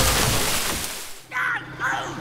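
Cartoon sound effect of a gust of wind whooshing, starting suddenly and fading away over about a second.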